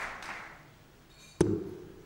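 Crowd applause dying away, then a single dart striking a sisal bristle dartboard with a sharp tap about one and a half seconds in.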